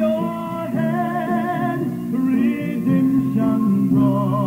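Gospel song with singing voices held in wavering vibrato over what sounds like guitar accompaniment.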